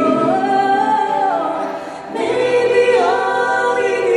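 Recorded pop love ballad with layered singing voices. A held sung note rises, holds and falls away; the sound dips briefly about halfway through, then comes back on a lower sustained note with a harmony line above it.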